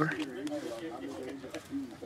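Faint, muffled talk from a television playing in the background, a voice rising and falling in short phrases.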